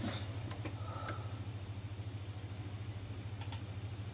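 A steady low background hum, with a few faint short clicks.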